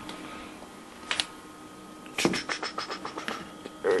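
Hard plastic storage tub and its lid being handled: a single click about a second in, then a quick run of clicks and scrapes about halfway through that fade away.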